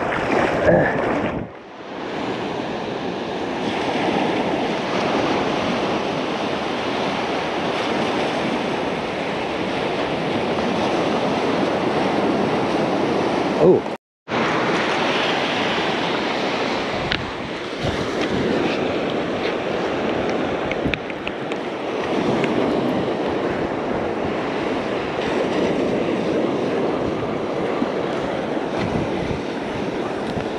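Ocean surf breaking and washing up the beach, with wind buffeting the microphone. The sound cuts out completely for a moment about halfway through.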